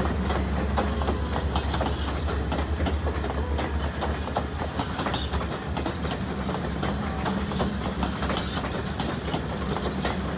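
Alaska Railroad passenger train rolling past, a steady low rumble with dense, rapid clicking and clacking of its wheels over the rails.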